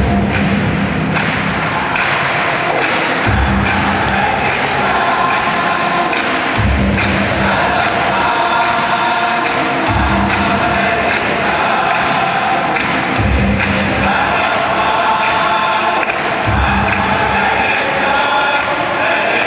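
Gospel choir singing with a live band of piano, bass, percussion and guitar, with a deep bass hit about every three and a half seconds.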